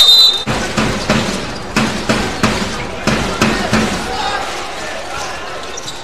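Basketball dribbled on a hardwood court, about three bounces a second, fading out after about four seconds, over the noise of an arena crowd.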